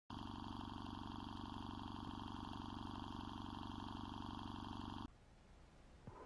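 Film projector running: a fast, even clatter of the film mechanism that cuts off suddenly about five seconds in.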